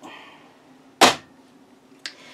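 A brief soft rustle, then about a second in a single sharp thud: a paperback postcard book being tossed down onto a pile.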